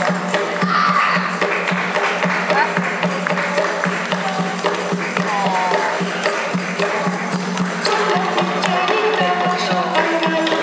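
Music with children shaking and tapping small hand percussion, maracas and a tambourine, giving a dense run of quick rattles and clicks.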